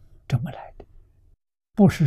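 Only speech: a man lecturing in Chinese, broken about halfway through by a short stretch of dead silence before the talk resumes.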